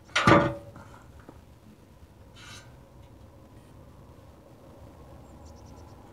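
A single loud metallic clank with a short ring just after the start, as metal hardware is handled while bolting the frame together. A brief rustle or scrape follows about two and a half seconds in, then faint outdoor background.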